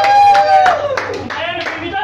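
A voice holds one long high note that breaks off just under a second in, with hand claps and voices around it.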